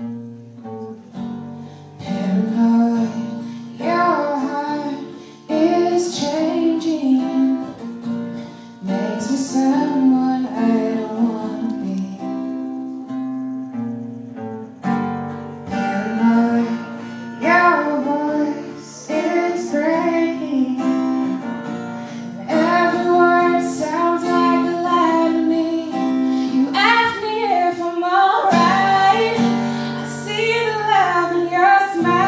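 A woman singing a song live over guitar accompaniment; the instrument starts the song and the voice comes in about two seconds later.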